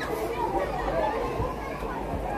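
Background chatter: several people talking at once, no words clearly picked out.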